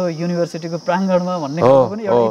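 A man's voice talking in conversation over a steady, high-pitched insect chirring.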